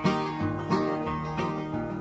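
Live bluegrass band playing an instrumental fill between sung lines: picked acoustic guitar with banjo and bass.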